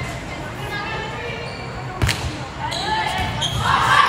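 A volleyball struck once with a sharp smack about two seconds in, echoing in a gymnasium, over indistinct players' and spectators' voices that grow louder near the end as the rally starts.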